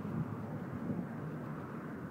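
Steady outdoor noise of wind on the phone's microphone mixed with street traffic.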